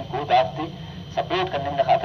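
A person's voice speaking in short bursts over a steady low hum.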